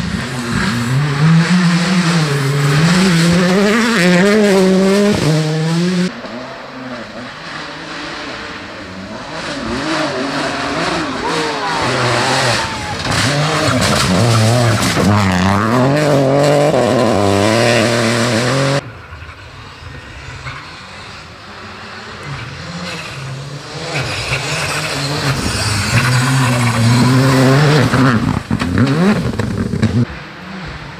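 Rally cars at full throttle on a gravel stage, their engines revving up and dropping back again and again as they change gear and slide through the bends. The sound cuts abruptly twice, about six seconds in and again near nineteen seconds, as one car gives way to the next.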